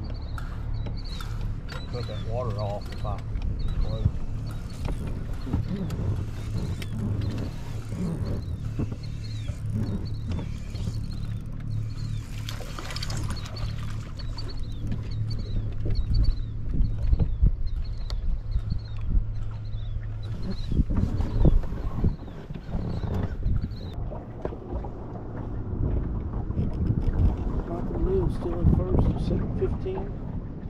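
Wind rumbling on the microphone over a steady low hum on a bass boat's front deck, with occasional thumps. A short high chirp repeats about twice a second until a few seconds before the end.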